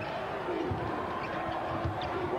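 Arena crowd noise with a few low thuds of a basketball bouncing on the hardwood court.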